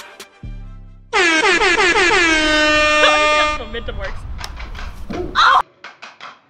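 A loud horn blast lasting about two and a half seconds, its pitch dipping slightly as it starts and then holding steady. A short loud voice follows near the end.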